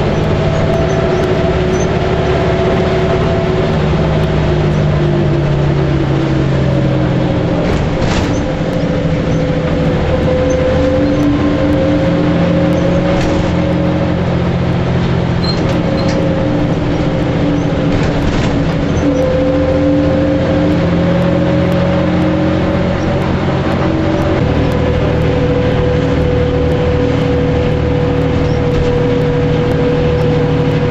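City bus running on the road, heard from inside the cabin near the front: a steady engine and drivetrain hum whose pitch drifts with speed and shifts suddenly about 24 seconds in, over constant road noise, with a few brief knocks or rattles.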